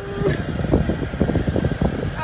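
Cabin noise inside a Ford Mustang: the engine running at rest with the air-conditioning fan blowing, as an uneven low rumble.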